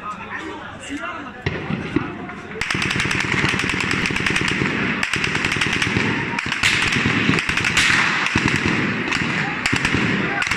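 Rapid automatic gunfire breaking out about two and a half seconds in and going on as a dense, unbroken run of shots, mixed with voices.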